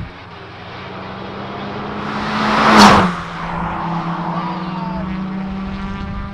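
A car passing at speed down the track: its engine and tyre noise build up, peak sharply just under three seconds in as it goes by, and the engine note drops in pitch as it moves away.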